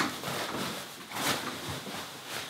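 Rustling and brushing of a collapsed ice fishing shelter's heavy insulated fabric as it is pushed and tucked into its sled, in a few soft, irregular strokes.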